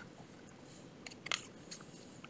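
A picture-book page being turned by hand: a few faint, short crisp paper crackles, the loudest a little past the middle.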